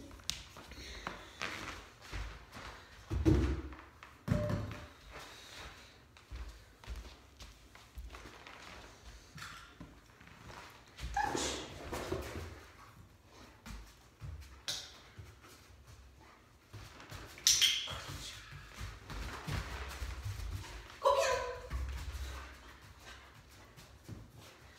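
Scattered soft thuds and shuffles from a person and a large dog moving on foam floor mats, with a few short, sharper knocks and scrapes.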